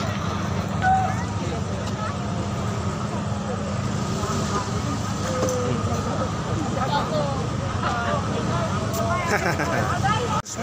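Busy city street: many people talking in the background over steady traffic.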